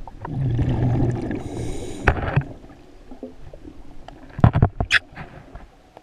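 Underwater, a diver's exhaled breath bubbling out of the regulator in a burst starting about half a second in, followed by a sharp click near the middle and a cluster of loud sharp clicks and knocks near the end.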